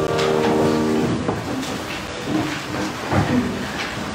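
The last held chord of the hymn's keyboard accompaniment, which stops about a second in. After it come rustling and a few soft knocks as the congregation settles.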